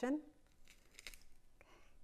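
A hand garlic press crushing garlic cloves as its handles are squeezed: a few faint clicks, then a short rasping squeeze near the end.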